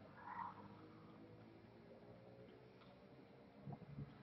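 Near silence: quiet room tone, with a faint sip of drink from a plastic cup in the first half second and a couple of faint soft clicks near the end.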